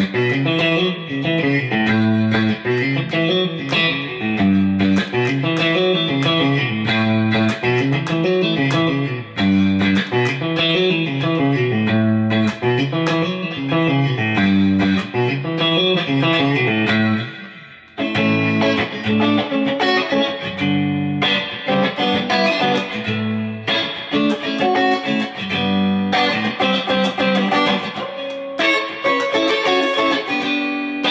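Fender Stratocaster electric guitar played solo: a repeating lick whose low notes climb and fall about every two and a half seconds. After a brief pause a little past the middle, a different passage with more chords follows.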